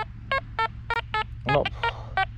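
Quest X10 Pro metal detector sounding a string of short beeps of shifting pitch, about four or five a second, as its coil sweeps over a tiny silver earring back in the sand.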